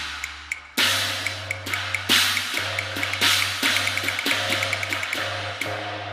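Cantonese opera percussion: cymbal crashes about once a second, each ringing out, with quick light ticks between them and a low steady tone underneath.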